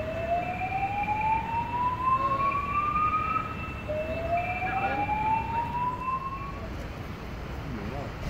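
Building evacuation alarm sounding its slow-whoop tone, a siren pitch that rises steadily for about three and a half seconds, cuts off and starts again from the bottom. It sounds twice, with fainter higher alternating tones going on above it. The whoop signals an evacuation of the building.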